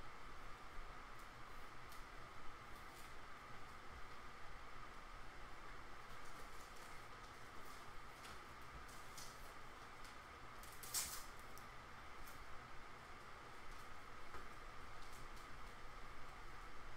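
Faint crinkling and clicking of clear plastic card sleeves being handled, with the sharpest crackle about eleven seconds in, over a steady low hum.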